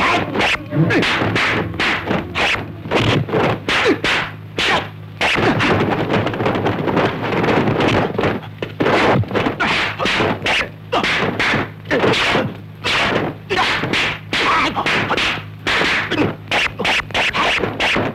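Dubbed kung fu fight sound effects: a fast run of punch and block whacks mixed with arm and sleeve whooshes, about two or three strikes a second with hardly a pause.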